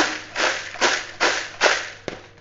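Crisp fried snack mixture of cornflake chips, boondi and nuts rustling and rattling in a bowl as it is tossed, in a quick, even rhythm of about two and a half tosses a second.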